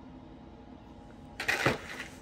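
A low steady hum, then about a second and a half in a brief, loud rustle as a gold pendant necklace is handled and set aside.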